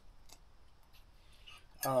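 A quiet pause with a few faint, sharp clicks of small objects being handled, then a man says "um" near the end.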